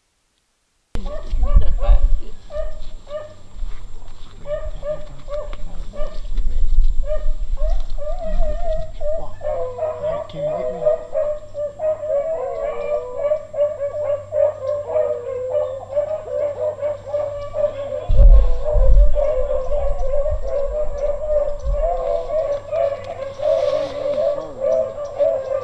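A pack of rabbit-hunting hounds baying on a trail, starting about a second in: scattered single barks at first, then from about nine seconds several dogs giving voice together in an unbroken, wavering chorus, the sign that they are running a rabbit.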